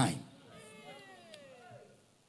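A faint, high-pitched cry that falls in pitch over about a second, following the end of a spoken word.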